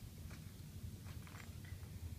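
Faint handling noise of plastic pressure tubing and stopcock connectors being manipulated: a few soft, scattered clicks over a low hum.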